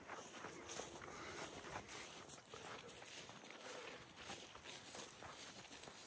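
Faint footsteps of a person walking through long grass.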